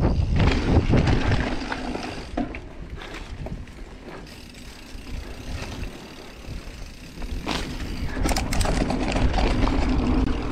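Mountain bike rolling down a dirt trail: wind buffeting the microphone and tyres rumbling on the dirt, with a few sharp knocks and rattles from the bike. The rush dies down for a few seconds in the middle and picks up again near the end as the bike speeds up.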